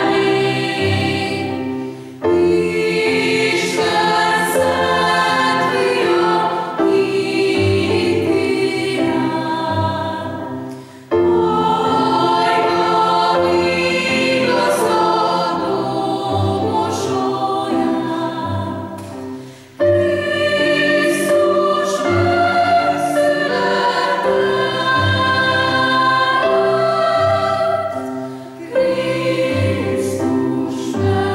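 Mixed choir of men's and women's voices singing in parts in a church. The phrases are long and sustained, with a short break for breath about every nine seconds.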